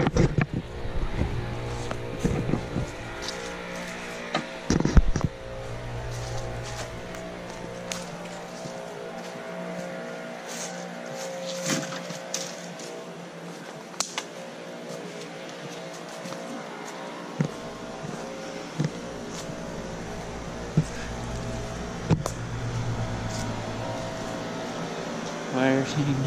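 A steady engine hum runs throughout, with scattered clicks and knocks from footsteps and handling.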